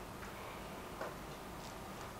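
Quiet room tone with a few faint ticks, the clearest one about a second in.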